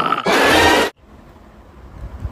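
Cartoon monster sound effect: a harsh, noisy growl that cuts off suddenly just under a second in, leaving faint room tone.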